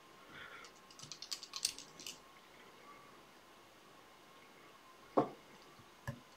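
A quick run of light clicks and crackles lasting about a second, then a single sharp click near the end, from handwork at a fly-tying vise as a salmon-fly wing feather is tied onto the hook.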